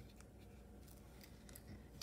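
Faint scraping and a few soft clicks of a cardboard board-book page being turned by hand.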